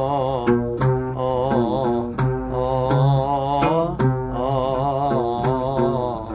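Arabic song music led by an oud: plucked strokes under a wavering, ornamented melody line and held low notes, in an instrumental passage without words.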